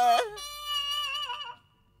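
A cartoon man's frightened, whimpering cry that trails off into a long, slowly falling wail and fades out about one and a half seconds in, as he faints from fright.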